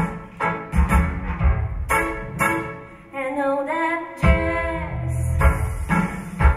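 Female voice singing a jazz show tune over accompaniment with a steady, thumping beat. About three seconds in, the beat drops out while the voice holds a note, and the accompaniment comes back in just after four seconds.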